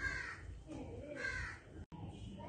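A bird calling twice in the background, two short harsh calls about a second apart.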